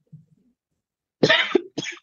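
A person coughing twice over a video-call line, the first cough a little over a second in and longer, the second one shorter.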